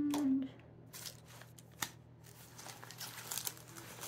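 Nylon fly-fishing vest being handled: its fabric rustles and crinkles, with scattered small clicks and taps as pockets and clips are worked. A woman's short hummed note ends about half a second in.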